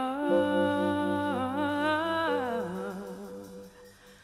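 A woman singing long held notes into a microphone over soft, sustained low accompaniment. A little over two seconds in, her voice slides down and fades out, leaving it nearly quiet near the end.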